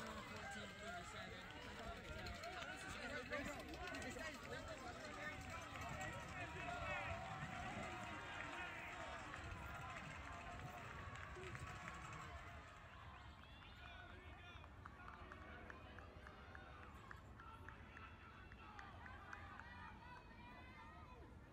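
Footfalls of a large pack of cross-country runners on grass, mixed with a crowd of spectators calling and shouting encouragement. It quietens about two-thirds of the way through as the pack moves off.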